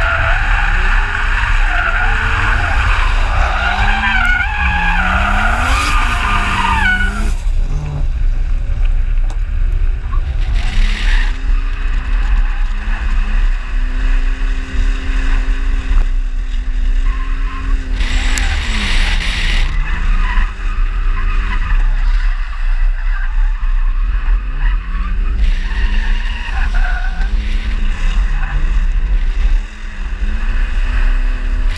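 Drift car's engine revving up and down while its tyres squeal, the squeal heaviest through the first seven seconds and returning briefly twice later. A constant low rumble of wind buffets the car-mounted microphone underneath.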